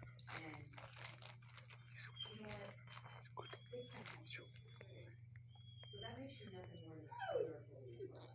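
A dog moving about on its bed and nosing at toys, with small clicks and rustles, over soft background voices and a steady low hum. About seven seconds in comes a short falling vocal sound, the loudest moment.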